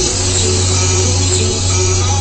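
A song playing, with a steady sustained bass note that shifts to a new pitch just after the start; no singing in this stretch.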